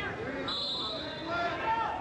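Voices calling out around a wrestling mat in a gym. About half a second in, a short steady high tone lasting about half a second sounds out: a blast of the referee's whistle.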